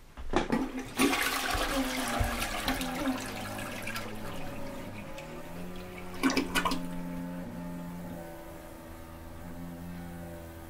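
A few sharp knocks, then a rush of water starting about a second in, with a second surge past the middle, settling into a steady hum of tones as the rush dies away.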